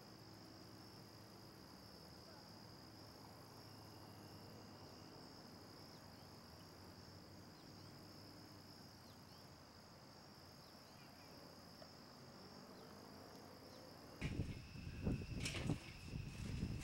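Faint, steady trilling of crickets. About fourteen seconds in, it gives way to louder irregular bumps and rustling.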